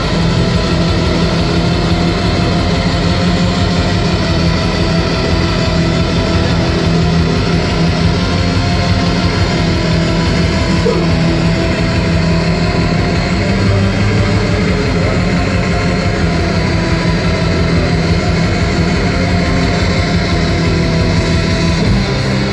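Live industrial black metal at full volume: distorted electric guitars over a fast, dense drum-machine beat, in an instrumental stretch without vocals.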